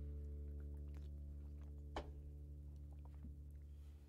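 The last chord of a steel-string acoustic guitar ringing out and slowly dying away at the end of a song. There is a single sharp click about two seconds in, and a few faint clicks.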